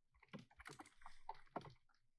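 Faint, quick run of keystrokes on a computer keyboard as a few words are typed.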